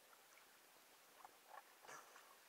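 Faint splashes of water as a swimmer moves in it: three small splashes in the second half, the last the loudest.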